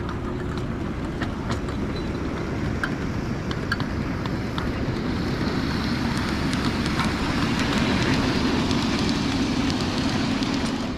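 Ride-on miniature scale train rolling past on its track: a steady running noise with scattered clicks of wheels on the rails, getting louder as it comes closest about eight seconds in.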